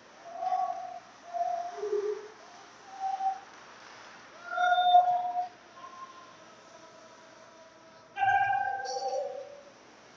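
Scattered shouts from people in an ice hockey arena: a string of short single calls, and about eight seconds in, a longer, louder call that begins with a thump.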